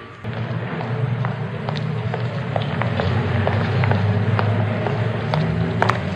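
City street sound: a steady low traffic hum with footsteps clicking irregularly on the pavement, several walkers at once.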